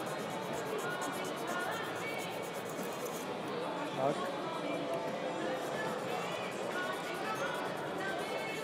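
Indistinct background chatter of many people in a large hall, steady and moderately quiet, with faint music underneath.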